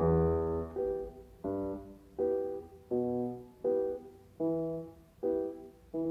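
Solo piano playing short, detached chords, a new chord about every three-quarters of a second, each dying away before the next, with no singing.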